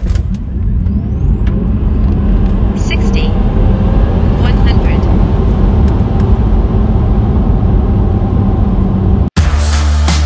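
Electric Tesla Model 3 Performance dual-motor launching hard from standstill to over 100 km/h, heard from inside the cabin: loud, heavy road and tyre rumble that starts suddenly, with a faint rising motor whine. The sound cuts off sharply near the end, where music begins.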